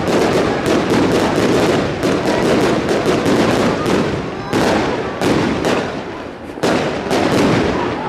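Fireworks display: aerial shells bursting in rapid succession, a string of sharp bangs with a brief lull a little past the middle before the bangs resume.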